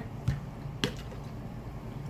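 Two short clicks about half a second apart from a plastic flip-top water bottle being handled as its lid is snapped open.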